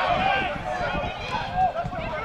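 Men shouting and calling over one another on an outdoor football pitch during an attack on goal, with low irregular thuds and one louder thump about one and a half seconds in.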